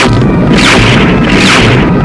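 Loud added battle sound effects: a string of booms, about one every three-quarters of a second, over a dense rumble, with music underneath. They begin abruptly at the cut.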